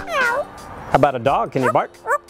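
African grey parrot imitating a dog into a microphone: a drawn-out whining call that dips and rises, then about a second in a quick run of yelping barks.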